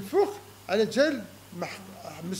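A man talking in short, strongly inflected phrases: only speech.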